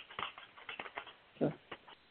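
Tarot cards being handled, a run of quick, irregular light taps and flicks, with one short word spoken about a second and a half in.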